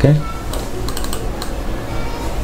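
A few light computer keyboard clicks, spaced out, as shortcut keys are pressed, over a steady low hum.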